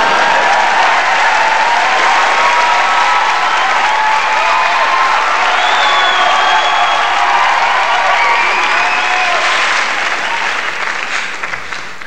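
Live audience applauding steadily, with faint crowd voices under the clapping, easing off slightly near the end.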